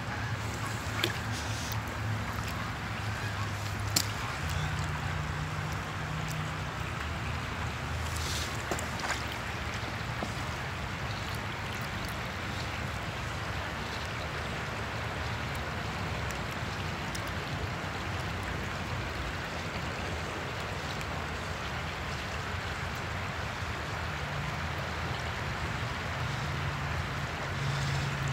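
Steady rush of a small creek's flowing water, with a low rumble underneath and a single click about four seconds in.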